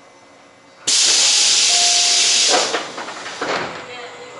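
A sudden loud hiss of compressed air from the stopped Tobu 8000 series train's pneumatic system starts about a second in. It holds for under two seconds, then fades away in a few smaller puffs.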